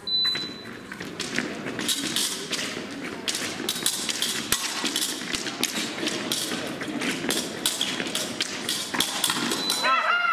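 Épée fencers' footwork on the piste: a long run of quick taps and thuds as they advance and retreat. Just before the end, the electric scoring box sounds a steady high tone, signalling a touch.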